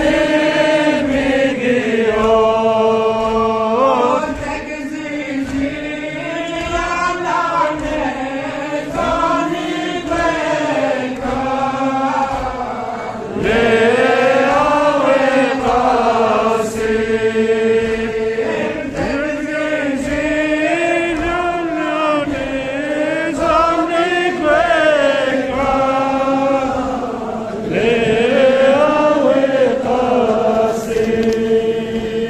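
A man chanting a Balti noha, a Shia lament for Muharram, in long melodic lines that rise and fall. A steady low thud beats about twice a second under the voice, and the singing grows louder about 13 seconds in and again near the end.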